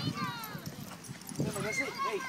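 A pit bull and another dog play-wrestling, with short dog vocalisations and paws scuffling on grass.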